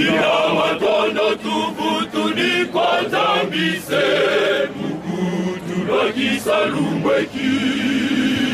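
A group of men chanting together in a choir, their voices wavering as they sing in phrases.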